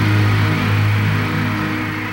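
Live band holding the song's final sustained chord, a steady low note under a wash of higher sound.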